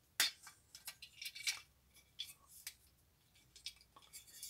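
Faint, scattered clicks and taps of small hard plastic and metal model parts being handled and fitted together: the arc reactor piece of an Iron Man model being pushed into its seat in the chest section.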